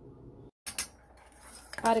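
Metal ladle clinking against a stainless steel saucepan while stirring dissolved jaggery syrup, a short clatter just under a second in.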